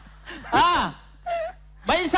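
A voice over a stage microphone making drawn-out wailing exclamations. Each one rises and falls in pitch: one about half a second in, a short one near the middle, and another starting near the end.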